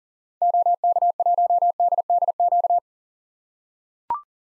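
Morse code sent as a single-pitch beep tone at 40 words per minute, keying the amateur radio call sign OK1DDQ in rapid dots and dashes for about two and a half seconds, starting about half a second in.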